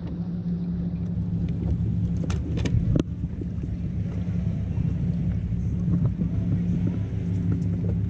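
Boat's outboard motor running at a steady idle, a low even hum, with a few light clicks about two to three seconds in.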